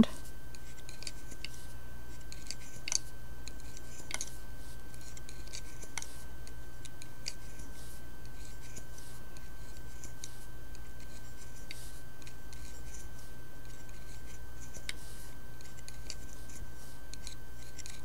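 Light, irregular clicks and scratches of a metal loom hook catching on the pegs of a wooden knitting loom as yarn loops are lifted off, over a steady low hum and a faint high whine.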